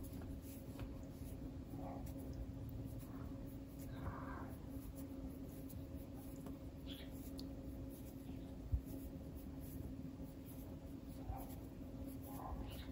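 Faint, soft scratching of cotton twine drawn through a crochet hook as chain stitches are worked, over a steady low hum, with a single soft knock about nine seconds in.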